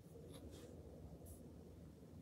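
Near silence: faint room tone with a few faint, brief sounds.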